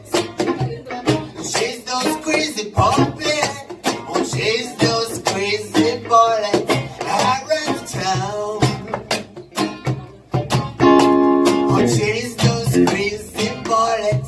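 Acoustic guitar strummed in a steady rhythm with a man singing a reggae song, with one long held note about eleven seconds in.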